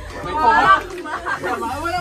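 Speech only: people talking back and forth in casual conversation.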